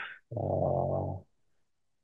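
A man's drawn-out hesitation sound, a steady low "uhh" lasting about a second, followed by a short pause.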